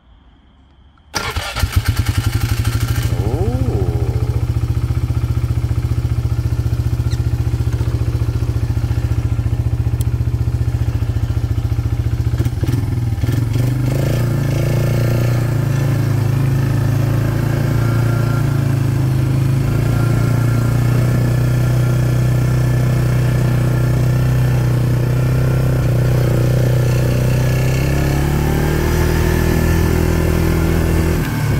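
2003 Polaris Magnum ATV's single-cylinder four-stroke engine starting on the key about a second in and idling with a brief rev. About 12 seconds in it pulls away under load, and its pitch rises near the end as it speeds up.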